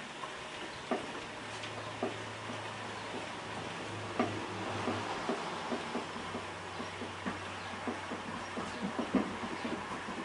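Hand-cranked Maxant honey extractor being turned, spinning two frames of honey. A low, steady whirring hum from the turning reel comes in about a second and a half in and holds, with scattered light clicks and knocks throughout.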